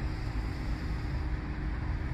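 Steady low rumble of road traffic outdoors, with no single vehicle standing out.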